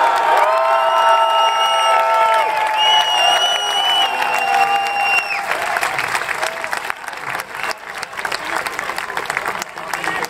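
Outdoor crowd applauding and cheering. Several long, steady held tones sound over it for the first five seconds or so, then the clapping carries on alone, slowly fading.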